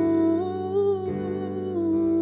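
A slow ballad: a male voice holding a sung melody line that glides between long notes, over sustained accompaniment chords.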